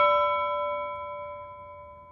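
A single struck bell-like chime note, its clock-chime tone ringing on and fading steadily away.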